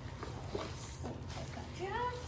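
Paper gift bag and tissue paper rustling softly as a wrapped present is pulled out. Short gliding vocal sounds from a child come near the start and again just before the end.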